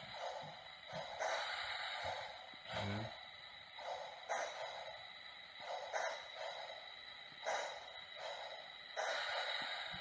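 Lionel HO scale Berkshire model steam locomotive crawling at very slow speed: soft hissing pulses come and go every second or so over a faint steady high whine.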